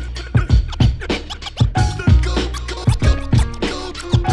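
Hip-hop track with a steady looped drum beat and turntable scratching over it, with no rapping.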